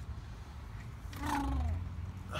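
A person's voice giving one falling groan partway through, over a steady low rumble.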